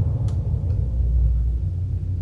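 Deep, sustained low rumble from a film trailer's sound design, the drawn-out tail of a heavy boom, swelling slightly about a second in.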